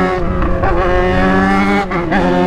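Yamaha XJ6 motorcycle's inline-four engine running loud under way. It holds a steady note that drops sharply in pitch twice, once shortly after the start and again near the end.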